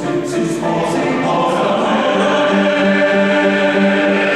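Mixed youth choir singing held chords, with hissed 's' consonants in the first second. About halfway through, a low part takes up a short note repeated in an even pulse, a little over twice a second, under the sustained upper voices.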